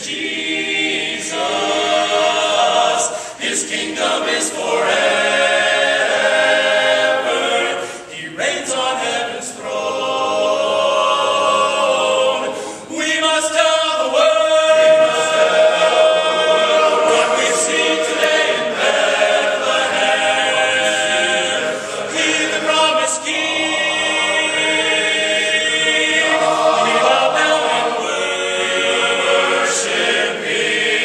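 Men's barbershop chorus singing a cappella in close harmony, the phrases broken by short breaks about three, eight and thirteen seconds in.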